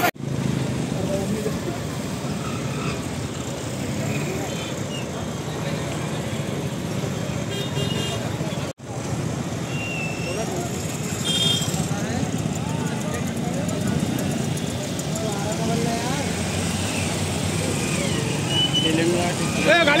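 Motor vehicle engines idling steadily, with scattered voices around them.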